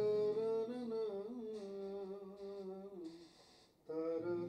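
A man humming a slow, gliding melody with his mouth closed, over softly played acoustic guitar; the phrase dies away just before the end.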